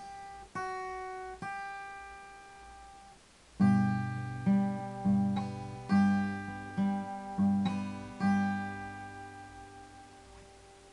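Solo guitar playing: a few single plucked notes ring out, then from about three and a half seconds in a louder run of low notes and chords is struck, about eight strokes, the last one ringing and fading away near the end.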